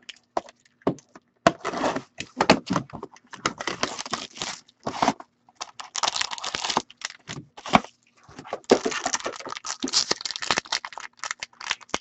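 A trading-card box and its packaging being opened and handled by hand: irregular tearing, scraping and crinkling of cardboard and wrapping, in quick spurts with short pauses.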